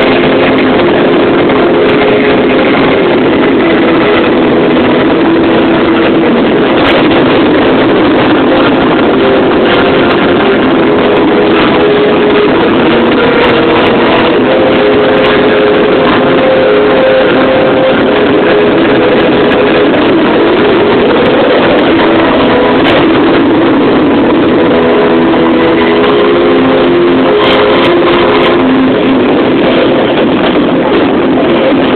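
Fireworks display heard through an overloaded microphone: a constant loud, distorted roar with held tones that shift in pitch every second or two, and few distinct bangs standing out.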